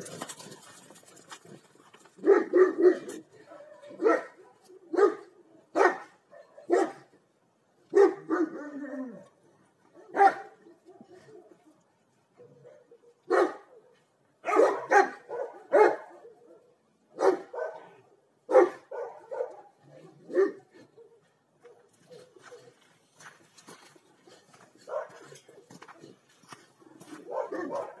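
Rottweilers barking in deep single barks and quick pairs, about twenty in all, with a couple of quieter lulls between bouts. This is alert barking at a stranger passing outside the gate.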